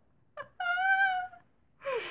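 A woman's high-pitched squeal of laughter, held on one pitch for nearly a second. A breathy burst of laughter follows near the end.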